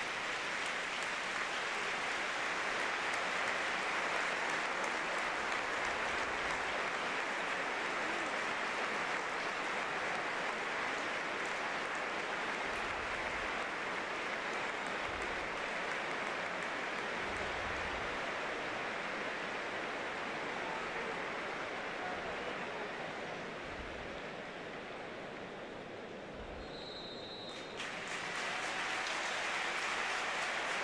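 Large stadium crowd applauding steadily through a minute's silence, easing off slightly later on. Near the end a short, high referee's whistle marks the end of the minute, and the crowd noise swells again at once.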